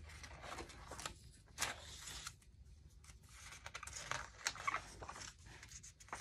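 Pages of a spiral-bound altered Little Golden Book being turned by hand: a series of soft paper rustles and swishes, the loudest about a second and a half in and again about four and a half seconds in.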